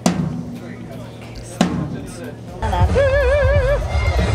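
Drums on a stage sound system: two single drum hits, then from about two and a half seconds in a heavy bass-drum beat with a held note wavering evenly in pitch above it.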